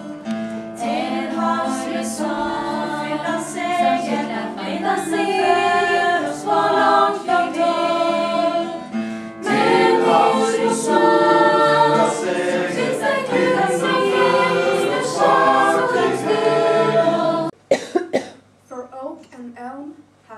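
A small group of young women singing together, with a brief pause about halfway. The singing stops a few seconds before the end, and a woman begins speaking.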